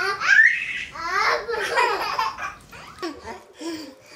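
Babies laughing: loud, high-pitched bursts of infant laughter that trail off about two and a half seconds in into softer, brief baby vocal sounds.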